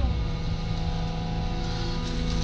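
Merlo 42.7 Turbo Farmer telehandler's diesel engine running, heard from inside the cab. Its pitch dips slightly at the very start and then holds steady.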